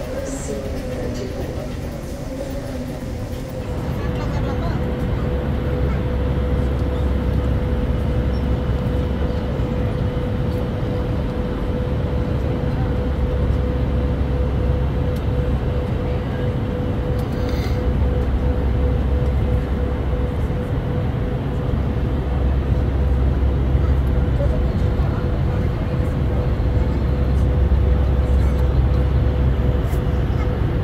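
Steady jet airliner cabin noise in flight: a loud, even low rumble of engines and airflow with a single steady whine over it, setting in a few seconds in after a quieter start.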